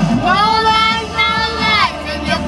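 A young girl singing, holding two long notes one after the other.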